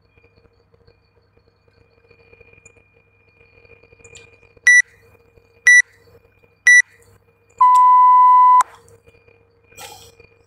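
Workout interval timer counting down to the start of a round: three short high beeps a second apart, then one longer, lower beep about a second long that signals go.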